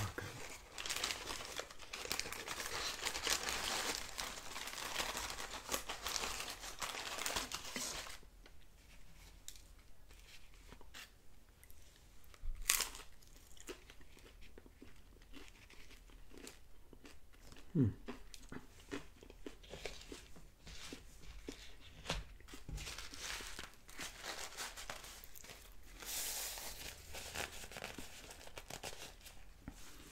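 Paper packaging crinkling and tearing close to the microphone, dense for the first eight seconds, then sparse light rustles and clicks with one sharp tap a little before halfway. A short 'hmm' follows, and there is another brief spell of crinkling near the end.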